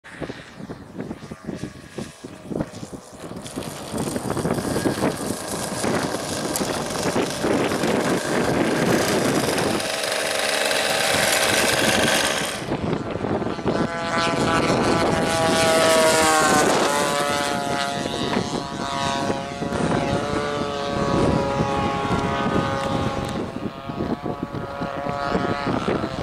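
Radio-controlled model airplane's engine and propeller droning as it flies past. The pitch drops as it goes by about two-thirds of the way through, the loudest moment, and then it holds steady. Gusty wind buffets the microphone in the first few seconds.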